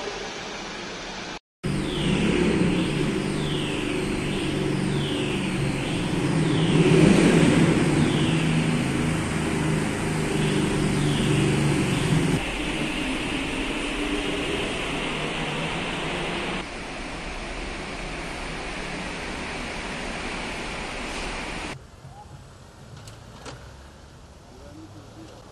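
Cars and a motorcycle driving through an underground car park: engines running with a string of short falling squeals, about one a second, up to about halfway through. The sound then drops in steps to quieter traffic near the end.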